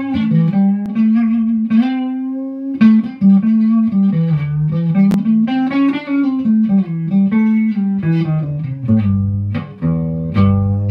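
Electric guitar playing fast single-note pentatonic scale runs on the low strings, stepping up and down the pattern with one note held about a second early on, and dropping to lower notes near the end.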